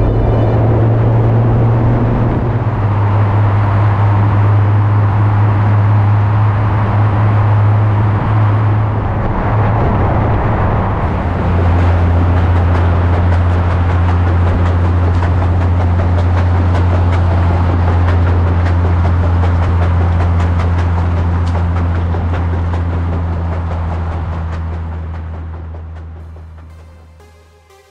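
Car driving at speed: a steady low engine drone under road and tyre noise. About eleven seconds in the drone settles a little lower and steadier, and the sound fades out near the end.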